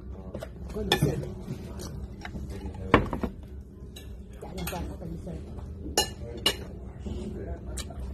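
Cutlery clinking against ceramic plates and bowls at a meal: a handful of sharp clinks, the loudest about three seconds in.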